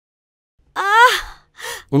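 A woman's short, high vocal gasp of distress, rising then falling in pitch, about a second in after a silent start; a brief second sound follows just before speech resumes.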